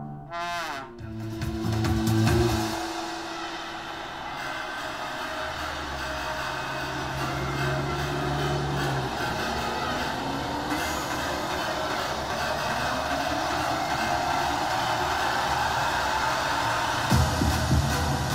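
Music-video trailer soundtrack: a short, low sustained music phrase, then a long build that slowly swells in level with rising sweeps, ending on a deep bass hit.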